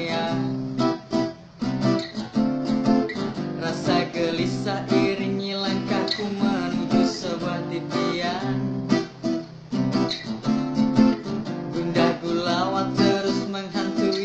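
Acoustic guitar strummed in a steady rhythm, with a man's voice singing over it at times.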